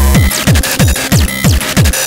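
Frenchcore electronic dance track: a fast, loud distorted kick drum hitting about four times a second, each hit dropping in pitch, under dense noisy synth layers.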